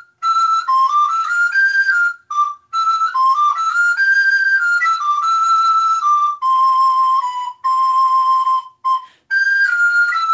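A solo recorder playing a Renaissance galliard melody: clean, steady-pitched notes that move in small steps, each started with the tongue in a pattern of strong and weak strokes (t, r, d syllables). There are a few short breaks between phrases.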